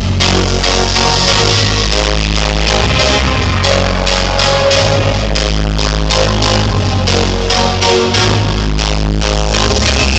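Electronic dance music from a DJ set, played loud over a club sound system, with a steady beat of about two beats a second.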